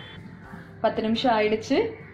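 A woman's voice speaking, starting about a second in after a quieter moment.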